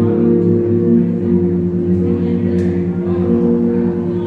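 Electric guitar played live, slow chords that ring on and sustain, changing every second or so.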